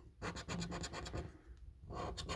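Scratch card's silver scratch-off coating being scraped away in quick, short strokes, with a short pause a little past halfway and the scraping resuming near the end.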